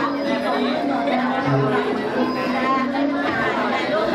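Several people talking at once in overlapping chatter, with no single voice standing out.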